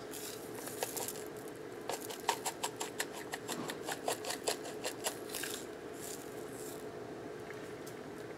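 A small glass spice shaker shaken over a bowl of raw ground turkey: a quick run of sharp clicks and rattles for a few seconds, with softer shaking before and after, over a steady hum.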